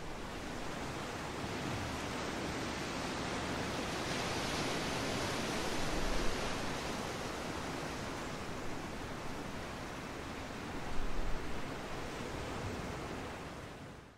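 Ocean surf: a steady rushing wash of sea noise that swells slightly midway and again near the end, then fades out.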